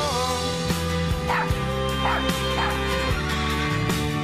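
A puppy gives three short yips about a second apart in the middle, over the held closing chords of a song.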